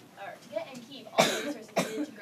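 A person coughing twice: a short, loud cough about a second in and a second one near the end.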